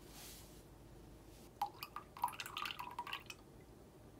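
Milk poured from a carton into a glass measuring cup: a quick run of liquid glugs and plops for under two seconds, starting about a second and a half in. A brief soft hiss of flour poured into a glass cup comes at the start.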